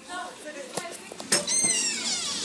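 A baby gives a short, high-pitched squeal with a falling pitch about one and a half seconds in, after a couple of faint knocks.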